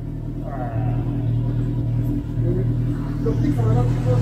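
A motorcycle engine idling steadily with a low, even hum, with faint voices briefly over it.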